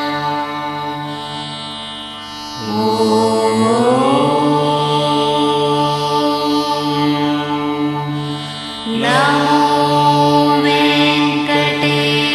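Indian devotional music with a chant-like melody over a steady drone. Long held notes slide upward in pitch about three seconds in and again near nine seconds.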